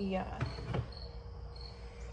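Crickets chirping outside, short high chirps at one pitch repeating less than a second apart.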